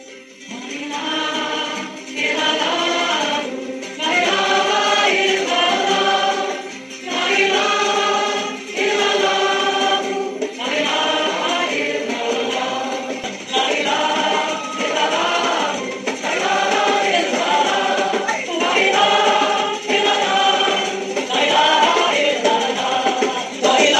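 Outro music of sung vocals in phrases about a second long with short breaks, fading in over the first second.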